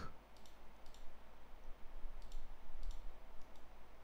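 A few scattered computer mouse clicks over a faint steady low hum.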